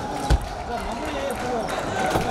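Table tennis rally: the celluloid ball clicking off rubber paddles and the table, with one heavy low thump about a third of a second in. Voices from around the busy hall run underneath.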